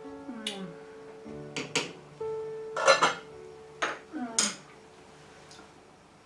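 Several sharp metal clinks of a spoon and pot lid against an enamel cooking pot, the loudest a double clink about three seconds in, over soft background music.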